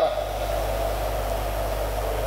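Steady low hum with an even hiss over it, unchanging throughout: the room's constant background noise with no one speaking.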